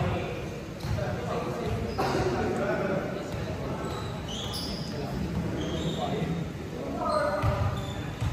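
Indoor volleyball play in a large echoing gym: sharp hits of the volleyball about one and two seconds in, with players' voices calling out, loudest near the end.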